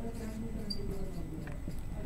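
Marker pen writing on a whiteboard, scratching lightly with a short high squeak near the middle.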